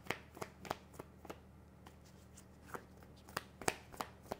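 A deck of tarot cards being shuffled by hand: soft, scattered clicks and flicks of card stock, quieter for a stretch in the middle before picking up again near the end.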